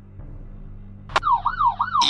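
Low hum, then about a second in a sharp click and a police-car siren in yelp mode starts up. Its pitch swings up and down about four times a second.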